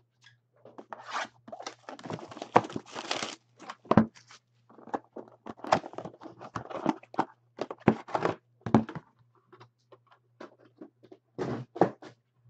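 A sealed cardboard trading-card hobby box being torn open by hand: crackling, tearing wrapper and cardboard in irregular bursts, with sharp taps and handling knocks. A faint steady hum runs underneath.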